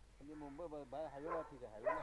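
Speech only: a man talking faintly, quieter than the conversation around it.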